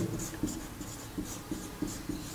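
Whiteboard marker writing on a whiteboard: a series of short scratchy strokes as letters are formed one after another.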